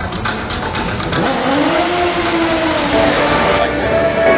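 Stunt motorcycle engine revving, its pitch rising and then falling once in the middle, over a loud, noisy background.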